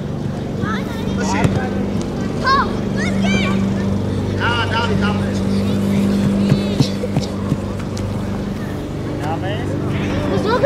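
Young players shouting short calls to one another on an outdoor football pitch, several sharp shouts spread through the few seconds, over a steady low hum.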